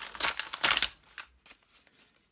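Plastic blister pack and glossy paper rustling and crackling as the packaged toy lamp is lifted off a magazine cover and handled. It is loudest in the first second, then dies down to a few faint clicks.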